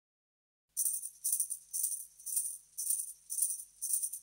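Jingling percussion shaken in a steady beat, about two shakes a second, starting after a moment of silence as the song opens.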